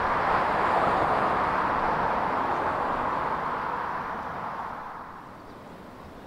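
Road traffic passing: a steady hiss of tyres and engine that slowly fades away over about five seconds.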